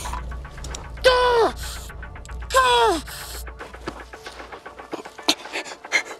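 A man's pained cries after a velvet ant sting: two drawn-out groans, each falling in pitch, about a second and two and a half seconds in, with heavy breathing between them.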